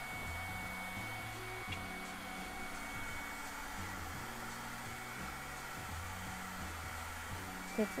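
Faint background music of low sustained notes that change pitch every second or so, over a steady hiss.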